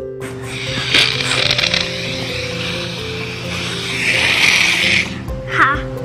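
Background music with a steady breathy hiss over it as air is blown through a cut squeeze-bottle cap dipped in soap solution, pushing out a foam of bubbles; the hiss stops about five seconds in, and a child's voice is heard near the end.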